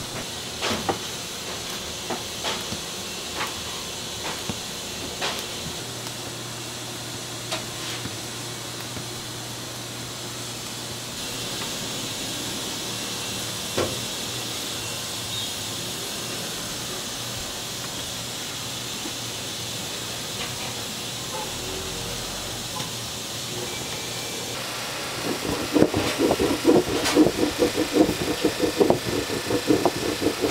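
A wooden rolling pin clacking quickly and repeatedly against a floured wooden board as dumpling wrappers are rolled out, starting about four seconds before the end and the loudest sound here. Earlier there are a few scattered sharp knocks on the board as dough is cut into pieces, all over a steady hiss.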